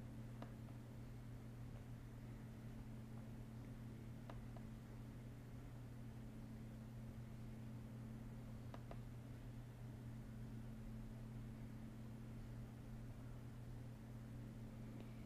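Quiet room tone: a steady low hum, with a few faint clicks, about three in all.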